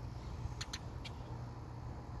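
Outdoor ambience: a steady low rumble of distant road traffic, with a few short high chirps about half a second and a second in.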